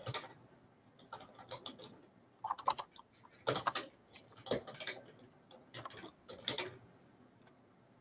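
Computer keyboard typing: short clusters of key clicks with brief pauses between.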